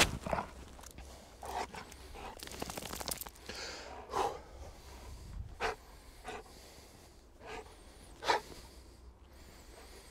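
Faint, short breathy puffs of heavy breathing, a second or two apart, the loudest about four seconds in and again near eight seconds, over a low steady rumble.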